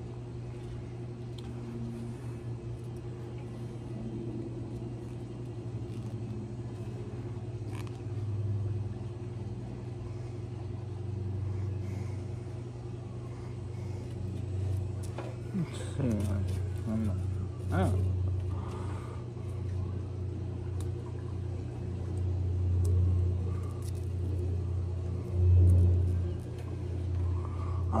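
A steady low rumble that swells louder several times in the second half, with a few faint clicks.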